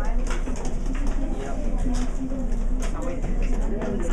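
Overlapping, indistinct chatter of many students talking at once in small groups, with no single voice standing out.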